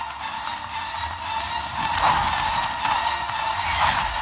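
Action-scene soundtrack from a TV episode: dramatic music with a low rumble beneath it and a few sharp hits, about halfway and near the end.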